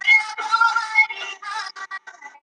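A recorded dance song played over a video call: a sung phrase over the music, with short sharp percussion strokes near the end.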